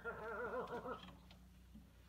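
A person's voice: one wavering, sung-sounding "ohh" lasting about a second, then a low steady hum underneath.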